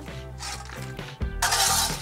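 Background music with steady held notes. A little over a second in comes a loud scrape of a steel shovel digging into loose coal on paving.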